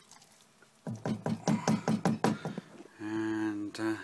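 A spoon stirring thick, stodgy corn mash in a saucepan: a quick run of wet, squelching clicks lasting about a second and a half. The mash is cooling and thickening, and it is stirred so it does not stick to the pan's bottom.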